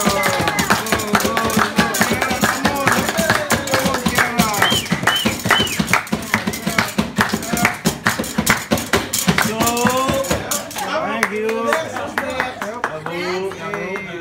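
Men clapping a fast rhythm and singing a chant in time with it. Near the end the clapping thins out and gives way to talk and laughter.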